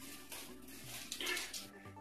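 Soft rustling and scraping of bent metal wire frames being handled and shifted over a plastic tarp.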